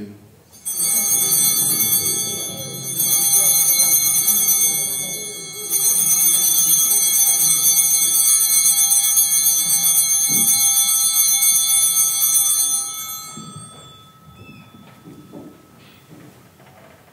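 Altar bells rung three times for the elevation of the chalice at the consecration, a cluster of small bells ringing together. Each ringing carries on from the one before and builds it up again, then the sound dies away near the end.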